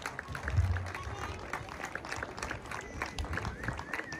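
Faint, scattered clapping from an outdoor audience: many irregular claps.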